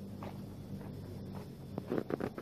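Footsteps of a person walking on a paved sidewalk, a few soft steps about half a second apart, over a steady low hum.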